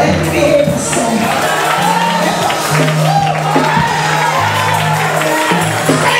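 Live gospel praise music in a church. Held bass notes change every second or two under voices singing, and a congregation claps along.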